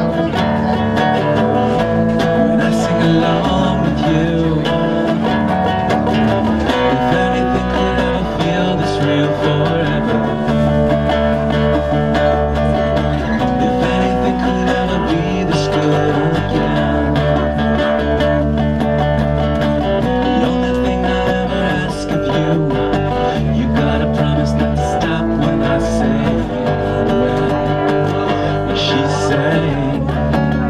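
A small band playing a song live: strummed acoustic guitar and electric bass, with a sustained lead melody carried by the middle performer at the microphone.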